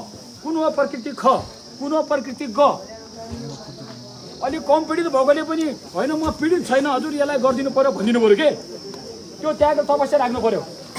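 A man speaking to a crowd in Nepali with lively, broken phrases and a couple of short pauses, over a steady high-pitched hiss.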